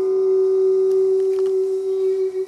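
A man holding one long, steady sung note, the final note of a folk song.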